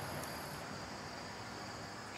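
Steady outdoor insect chorus, like crickets, heard as a faint, even high-pitched drone; the highest band of it stops about a third of the way in.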